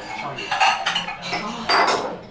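Tableware clinking and clattering at a restaurant table in a few short bursts, the loudest clatter near the end.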